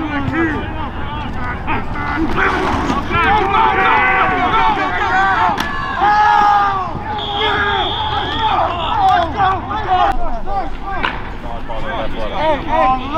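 Several voices shouting and calling out at once over each other, with no clear words, over a low steady rumble of field noise. About seven seconds in, a single high tone is held for about a second and a half.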